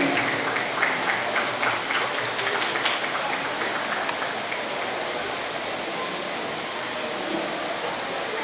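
Audience applauding, strongest in the first few seconds and then thinning out.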